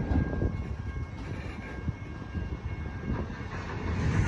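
Empty steel coal hopper cars of a freight train rolling slowly past: a steady low rumble with irregular knocks from the wheels and couplers.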